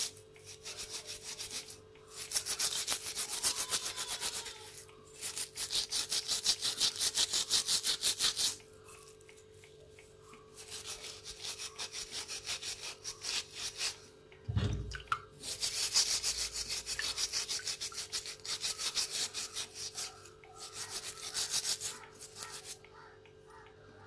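A brush scrubbing a metal gas-stove burner part by hand, in bursts of fast back-and-forth strokes with short pauses between them. There is a faint steady hum throughout and a single low thud about halfway through.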